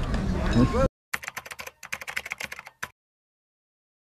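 Voices chatting for about the first second, then a quick run of computer-keyboard typing clicks lasting about two seconds, an editing sound effect laid under a caption card.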